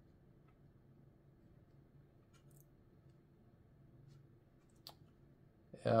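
Near silence with a faint steady hum, broken by a few soft clicks and one sharper click near the end.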